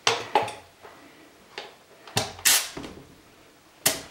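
Short hisses of nitrous oxide escaping and clicks as a tire pressure gauge is pressed onto the Schrader valve of a pressurized plastic soda bottle, a handful of brief bursts with the longest a little past the middle. The bottle holds about 45 psi.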